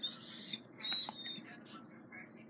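A dog close to the microphone making two short, high, hissy squeaks about half a second apart.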